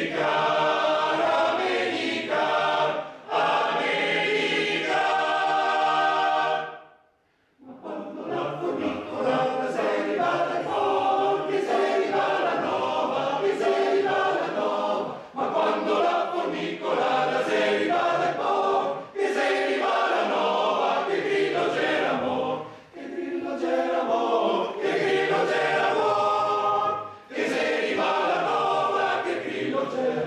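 Male voice choir singing a cappella, phrase after phrase with brief breaths between them, and one short full stop about seven seconds in.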